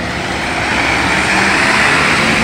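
A small sedan's engine running at low speed with its tyres rolling, close by as the car creeps past while parallel-parking; the steady noise builds slightly.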